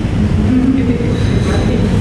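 A steady, loud low rumble of room noise, with faint voices murmuring partway through.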